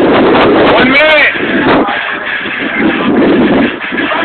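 Wind noise on a phone microphone, a steady rushing. About a second in, a person's voice gives a brief call.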